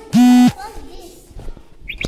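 A short, very loud vocal sound held on one flat pitch for about a third of a second near the start, then a brief high squeak near the end.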